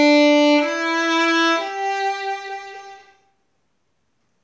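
Violin bowed in long, held notes that climb in three steps, the last note dying away a little after three seconds in.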